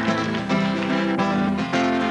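Live band music with an acoustic guitar strumming chords over a low bass line.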